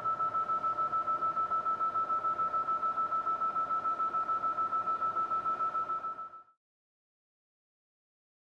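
Fotona LightWalker Nd:YAG dental laser's emission tone: one high electronic beep repeating evenly about six or seven times a second, the audible signal that the laser is firing. It fades and stops after about six seconds.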